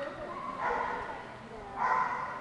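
A dog barking twice, once just over half a second in and again near the end, over background chatter.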